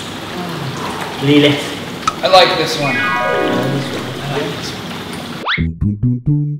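Steady water sound from the barrel baths under a man's brief voice. A sound effect steps down in pitch over about a second, and near the end a quick rising whoosh leads into plucked guitar music.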